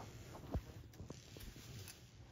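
A few faint, light ticks and scratches of a red squirrel's claws scampering on concrete; the clearest tick comes about half a second in.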